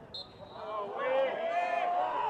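Players' voices shouting and calling out on a football pitch, building into a long held call, with a short high whistle peep just after the start.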